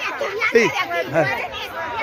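Speech only: people talking in Spanish.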